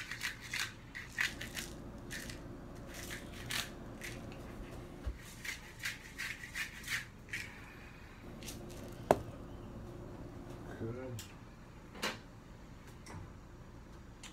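Pepper grinder being twisted: a run of short, gritty crunches over roughly the first seven seconds. A single sharp click comes about nine seconds in.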